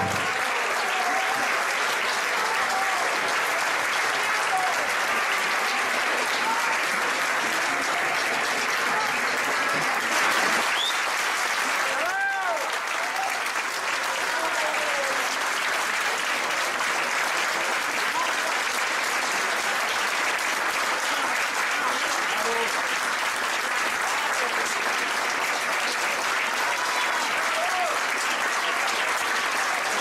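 Audience applauding steadily, with occasional voices calling out over the clapping.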